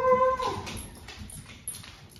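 A Great Dane whining in a high, wavering cry that fades out about half a second in: he is complaining at being shut in his crate away from the other dogs. Faint footsteps on the floor follow.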